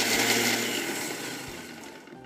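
Thermochef blender jug running on turbo speed, crushing ice in a cocktail mix: a loud, even whirring rush that gradually dies away over the two seconds.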